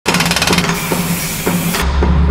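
Hammer drill boring into concrete: rapid hammering at first, then a steady grinding hiss that stops abruptly near the end. Underneath is music with a regular beat, and a deep bass note comes in as the drilling stops.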